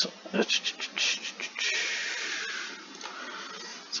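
Brief mumbled voice sounds, then a long breathy exhale that fades out over about a second and a half.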